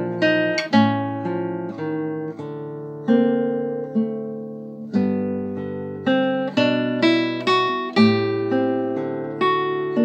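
Solo guitar playing a measured passage of plucked chords and single notes over held bass notes. A new note or chord sounds every half second to a second, and each rings and fades before the next.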